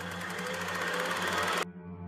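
A rapid buzzing rattle that grows louder and cuts off suddenly about one and a half seconds in, over a low steady drone.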